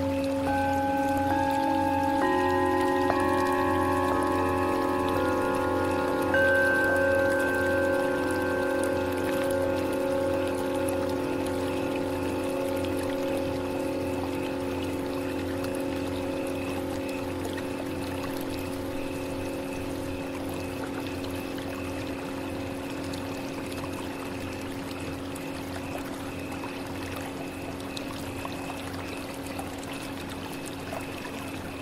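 Tibetan singing bowls struck one after another over the first six seconds or so, about seven strikes. Their tones layer into a chord and ring on with a wavering pulse, slowly fading, over a steady sound of flowing water.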